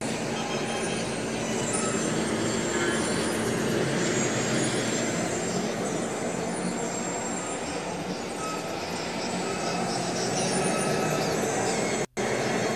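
Steady outdoor background noise, even and unbroken, with faint short high-pitched tones scattered through it.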